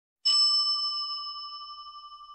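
A single bell ding sound effect, struck once and ringing out as it fades, with a slight wobble in the tone.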